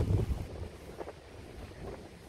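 Wind buffeting the microphone: a low rumble that gusts hardest in the first half second, then carries on more steadily.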